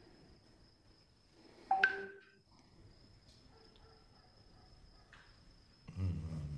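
Quiet film soundtrack: faint room tone with a steady high whine, broken about two seconds in by one short, pitched sound. A low sound starts right at the end.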